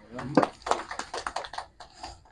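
Speech: a person's voice saying "um" and then a few further words that the recogniser did not catch.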